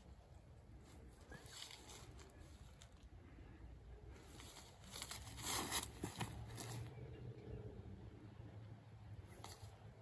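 Quiet outdoor ambience, with a short burst of rustling and crunching footsteps on grass and dry leaves about five to six seconds in as a disc golfer steps through a backhand throw.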